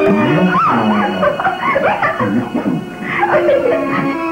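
Film background music with a run of short, pitch-gliding vocal sounds over it; the music's held notes come back near the end.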